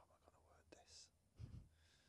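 Near silence: quiet studio room tone with a faint breathy, whisper-like hiss just under a second in and a soft low thud about a second and a half in.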